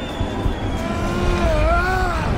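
A man's roar, starting about halfway through and wavering in pitch, over a deep steady rumble from the soundtrack.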